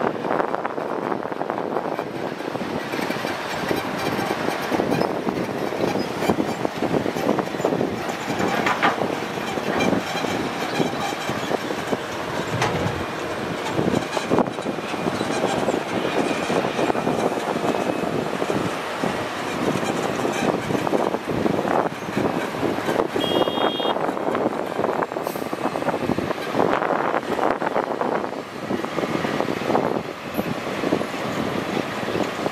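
Hitachi Zaxis 200 excavator's diesel engine working under load while it digs and loads a dump truck, with steady irregular knocks and clatter of the bucket and dirt clods striking the truck bed. A brief high-pitched beep sounds about two-thirds of the way through.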